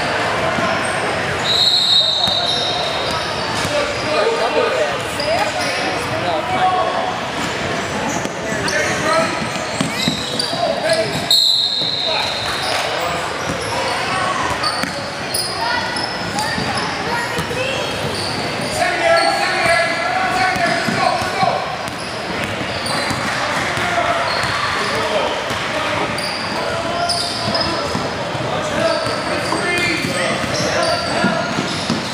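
Basketball game in a large, echoing gym: a ball bouncing on the hardwood and voices of players and onlookers throughout, with two short referee's whistle blasts, one about two seconds in and one about eleven seconds in.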